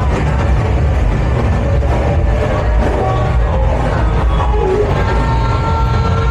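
Loud music with a heavy low end, played out onto the street from open-fronted bars.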